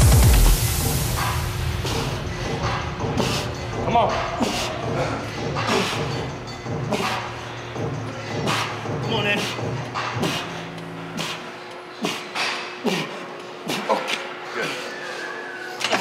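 Gym sounds during a heavy dumbbell incline press: scattered knocks and clicks with brief, indistinct voices and straining. Quieter background music runs under them until about two-thirds of the way through; a louder electronic track ends with a rising sweep right at the start.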